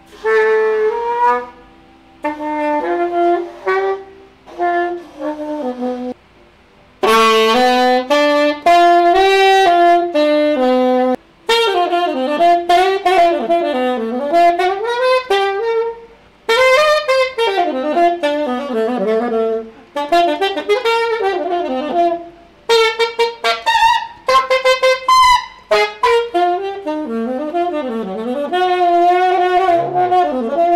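Saxophone playing a melody, in short phrases with pauses for the first six seconds, then near-continuous runs. At the start the reed sits too far in, behind the tip of the mouthpiece, a setting that makes the horn sound heavy and hard to play.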